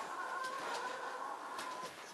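Saint Bernard puppy whining: one long, high, steady whine lasting nearly two seconds, a sign that it wants out of the pen.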